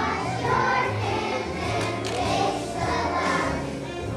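A first-grade children's choir singing together, with accompaniment holding steady low notes underneath.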